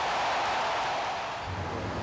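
Steady rushing background noise, joined about one and a half seconds in by the low steady hum of vehicle engines in street traffic.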